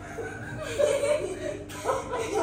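A woman and a girl laughing and chuckling.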